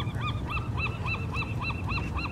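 A bird calling in a rapid, even series of short rising-and-falling notes, about four or five a second, over a steady low rumble.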